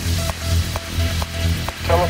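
Electronic dance music from a techno mix: a steady four-on-the-floor kick drum about twice a second under a short repeating synth blip and hissy hi-hats. A vocal sample comes in near the end.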